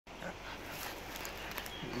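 A dog swimming in a river, heard faintly over a steady outdoor hiss.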